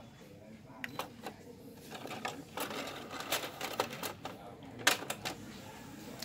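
Pioneer 3-disc CD changer mechanism clicking and running as it shifts and slides out the disc 2 tray. It makes an irregular run of clicks, the loudest a little after three seconds in and near five seconds.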